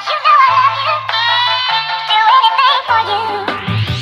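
Background music: an electronic track with a synthetic-sounding vocal melody over sustained bass notes, building with a rising sweep near the end.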